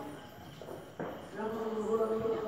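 A voice in long, drawn-out held tones, dropping away in the first second, then a sharp click about a second in before the voice picks up again.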